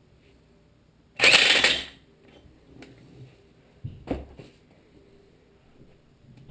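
An impact wrench runs in one short burst of under a second, spinning the flywheel nut back onto the crankshaft of a Tecumseh HM80 small engine. A shorter, quieter knock follows about four seconds in.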